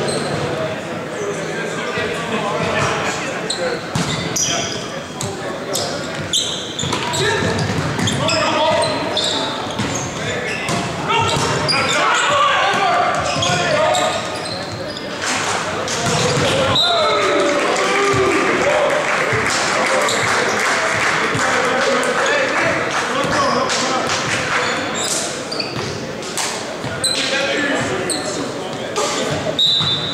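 Men's volleyball being played in an echoing gymnasium: sharp ball hits and thuds, with players calling and shouting. The shouting grows denser for a few seconds after a spike about halfway through.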